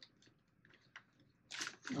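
Faint handling noise: light clicks and rustles as pads are pressed into place inside a motorcycle helmet's shell, with a short louder burst of noise about one and a half seconds in.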